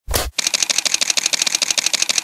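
A short burst of noise, then a rapid, even run of camera shutter clicks, about ten a second, like a motor-drive burst used as a sound effect in a news logo sting.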